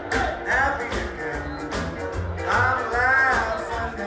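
A swing band playing live: upright bass and drums keep a steady beat under a voice holding long sung notes.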